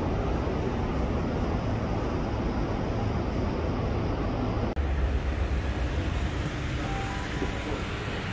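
Steady rumbling vehicle noise, strongest in the low end, with a momentary break about halfway through.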